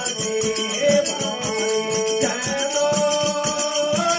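Harmonium playing held notes of a Rajasthani devotional bhajan, over a fast, steady beat of jingling hand percussion.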